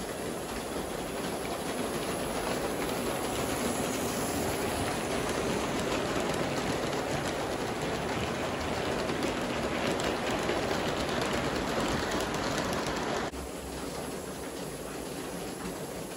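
G-scale live-steam model train running past on the track: a steady rolling, rushing noise that swells a little as the cars pass close, then drops lower near the end.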